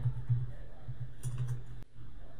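Computer keyboard being typed on: a few light key clicks over a low steady hum.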